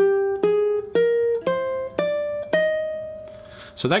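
Ukulele playing a C minor scale upward one plucked note at a time, G, A-flat, B-flat, C, D, and a top E-flat, about two notes a second. The last E-flat is held and rings out for over a second.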